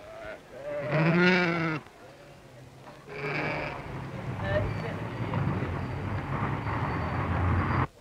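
A sheep bleating once, a long wavering call of about a second, followed by a shorter high call, over the low murmur of a crowd of men talking at a livestock market.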